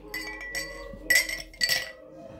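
Ice cubes dropping into a drinking glass holding a metal muddler, clinking against the glass three times, the loudest about a second in, each clink leaving a brief ring.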